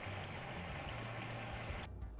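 Braising liquid bubbling and sizzling in a nonstick frying pan around short ribs as it reduces to a glaze: a steady hiss that cuts off suddenly near the end.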